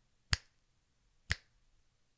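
Two sharp finger snaps about a second apart.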